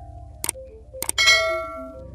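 Subscribe-button animation sound effect: two mouse clicks about half a second apart, then a bright bell ding that rings out and fades, over soft background music.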